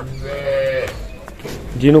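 A livestock animal gives one short call, held at a steady pitch for nearly a second, then a man speaks a word near the end.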